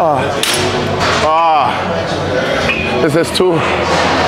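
Voices in a gym: a short vocal call about a second in and a spoken word near the end, with a few sharp metallic clinks from the cable machine's weight stack early on.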